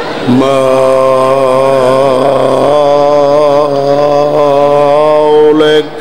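A man's voice chanting an Arabic recitation through a microphone, in long held melodic notes with a slight waver, breaking off briefly near the end.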